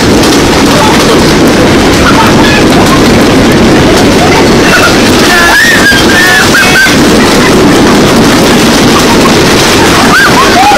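Heavy hail pounding into an outdoor swimming pool and the ground around it: a loud, dense, unbroken din. A few short exclamations from people rise over it about halfway through.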